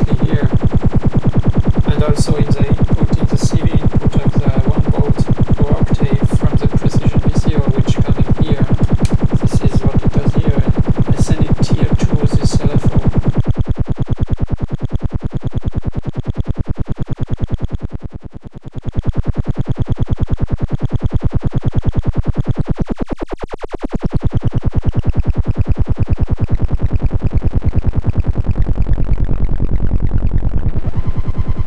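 Serge modular synthesizer patch waveshaped by its Extended ADSR envelope, sounding a fast, even pulse. Its timbre shifts as knobs are turned: bright and crackly with sharp clicks at first, then duller and smoother from about halfway, with two brief drops in level.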